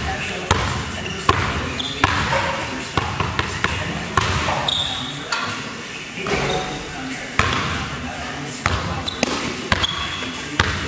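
A basketball bouncing on a hardwood gym floor in irregular dribbles, roughly one or two bounces a second, each a sharp hit that rings in a large hall.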